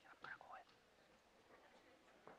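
Faint, indistinct speech, close to a whisper, mostly in the first half-second or so, over otherwise near silence.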